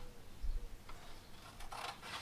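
Scissors faintly cutting and trimming a sheet of checkering graph paper, with a brief, slightly louder snip or rustle near the end.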